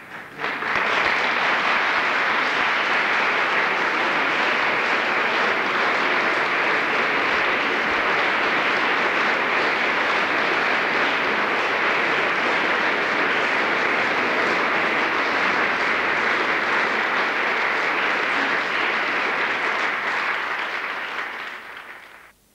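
Concert hall audience applauding, a steady dense clapping that starts suddenly and dies away just before the end.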